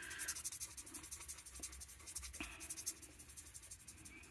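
Alcohol marker nib rubbing on cardstock in faint, short colouring strokes.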